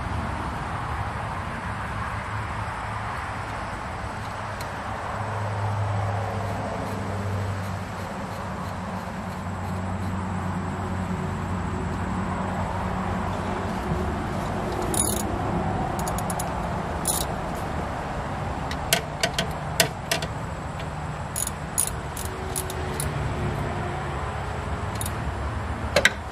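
Scattered metallic clicks and clinks of a wrench and a jumper wire on the terminal nuts of a golf cart's electric motor, mostly in the second half, over a steady background hum.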